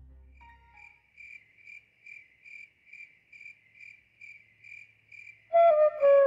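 A cricket chirping in an even pulse, about two to three chirps a second. Near the end a bamboo flute starts a melody, much louder than the cricket.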